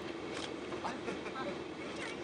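Indistinct background voices over a steady low hum, with a few scattered clicks.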